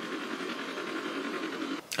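Steady rushing noise from the movie's soundtrack in a helicopter scene with radio traffic, cutting off suddenly a little before the end.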